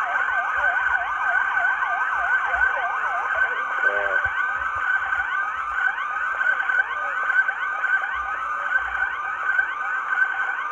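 Several police sirens sounding at once: a fast yelp of quick up-and-down sweeps for the first few seconds, then overlapping, repeated rising wails over a steady high tone.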